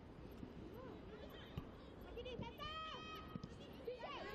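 Faint shouts of footballers calling to each other on the pitch, a few overlapping voices about halfway through, over a low steady background.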